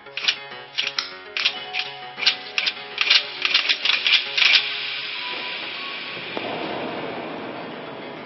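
Animated-film soundtrack: music with a run of sharp, irregular clicks, about three a second, that stops about four and a half seconds in. A steady rushing noise follows and grows deeper about six seconds in.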